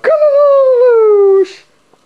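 A child's voice giving one long, drawn-out high-pitched call, transcribed as "Come", held for about a second and a half with its pitch sliding slowly down, then breaking off.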